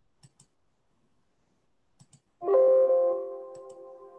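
Computer mouse double-clicked three times, and about two and a half seconds in a bright chord of several steady tones sounds, starting sharply and fading away over about two seconds.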